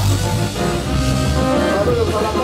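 Live band playing, with keyboard, congas and drum kit over a steady beat.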